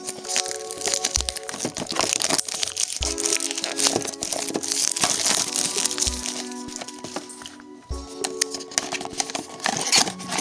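Background music, over which clear cellophane shrink-wrap is being peeled and crumpled off a small cardboard blind box, giving many small, sharp crinkles.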